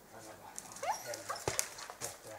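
Hunting dogs yelping and whining at a marten treed above them, with one quickly rising yelp about a second in and a sharp knock half a second later.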